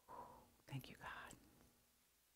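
Faint whispered speech, a quiet murmured prayer, in two short breaths of words.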